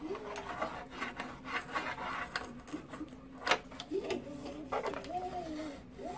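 Scratchy rubbing and scraping on the Y-axis V-rail and rollers of a Creality Ender-3 S1 3D printer as debris and swarf are cleaned off, in a run of short irregular strokes.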